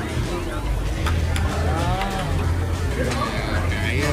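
Restaurant room noise: a steady low hum under faint background voices and music.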